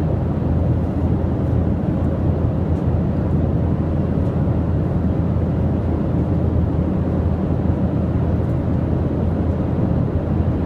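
Airliner cabin noise in flight: a steady, low rumble of engine and airflow noise that holds an even level throughout.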